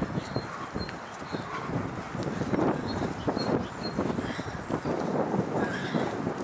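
Running footsteps of cross-country runners on soft, muddy ground strewn with dead leaves: many quick, irregular footfalls, growing louder as a runner comes close after about two seconds. A faint, short high chirp repeats about twice a second.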